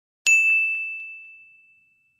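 A single bright bell ding, the notification-bell sound effect of a subscribe-button animation, struck about a quarter second in and fading away over about a second and a half.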